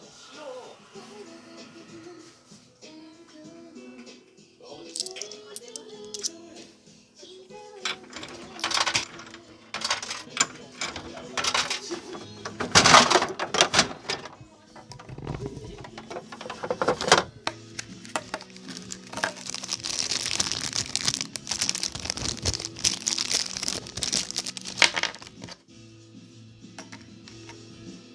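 Coins dropping into a capsule-toy (gacha) vending machine and its plastic dial crank being turned: a run of clicks and rattles starting a few seconds in and stopping near the end, loudest about halfway through. Light background music plays throughout.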